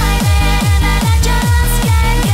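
Hands-up dance track at full beat: a steady four-on-the-floor kick drum under sustained synth lead chords.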